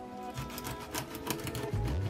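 Kitchen knife chopping in quick strokes across a pike conger fillet, each stroke tapping the wooden cutting board a few times a second: honekiri cuts that sever the fish's fine bones. Background music plays with it.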